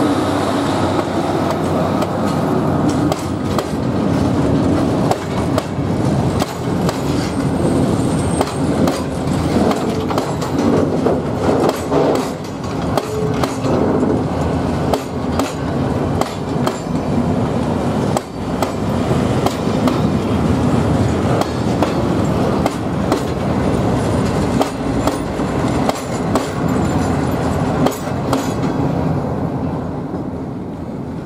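A train of pear-shaped covered hopper wagons rolling past at close range behind a 401Da diesel shunter, wheels rumbling with irregular clicks and knocks over the rail joints and brief squeals. The noise drops away near the end as the last wagon clears.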